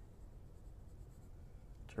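Faint scratching of a graphite pencil on sketch-pad paper.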